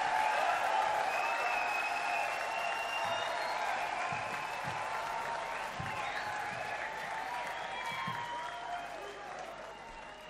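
Concert audience applauding and cheering at the end of a song, the applause gradually dying down.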